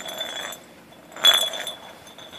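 A clear jar with a few pieces of cat food inside, rolled and batted across concrete by a cat: a scraping roll, then one sharp clink just past halfway as it knocks on the ground.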